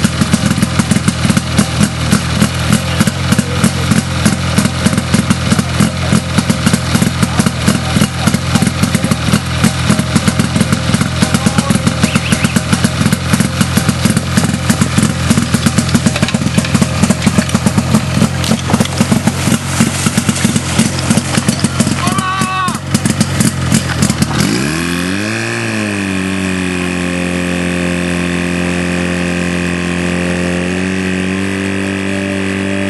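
Portable fire pump's engine running hard with a fast, even pulsing beat. About 24 seconds in, its pitch dips, swings back up and settles into a smooth, steady drone.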